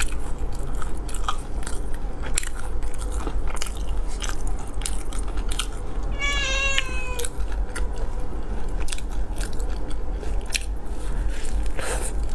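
Close-miked biting and chewing of crispy sauced fried chicken, a continuous run of crunchy clicks. About six seconds in, a short, high, wavering cry lasts about a second over the chewing.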